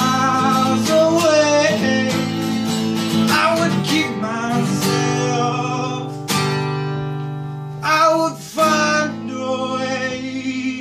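A man singing over a strummed acoustic guitar, his voice in short held phrases; a sharp strum about six seconds in and two more just after eight seconds, with the playing easing off toward the end.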